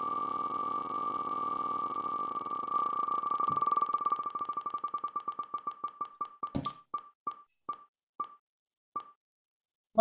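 Spinning prize-wheel app's tick sound effect: a fast run of pitched electronic ticks that gradually slows as the wheel loses speed, the ticks spacing out to about two a second before a last tick about nine seconds in as the wheel comes to rest.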